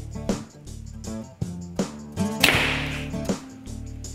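A single compound bow shot, the arrow going through a sheet of parchment paper into the target, heard as one sudden whooshing burst a little past halfway through that fades within a second. Background music with plucked notes runs under it.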